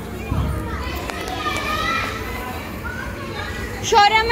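Several children's voices calling and chattering over the general noise of a busy indoor play area, with a brief low thump about half a second in.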